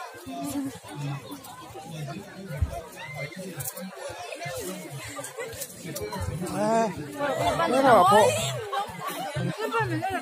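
People talking over one another in overlapping chatter, with one voice rising louder about three-quarters of the way through.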